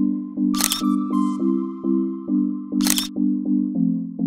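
Background music with low chords pulsing steadily about twice a second, cut by two camera shutter clicks, about half a second in and again near three seconds.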